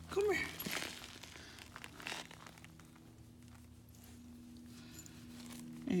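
Faint scuffs and rustles of a dog moving on dry dirt close to the phone, over a steady low hum. A man's voice calls briefly at the start.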